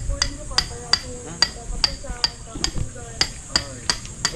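Hammer striking steel on a roof-truss job, about ten sharp blows with a brief metallic ring, two to three a second in a fairly steady rhythm.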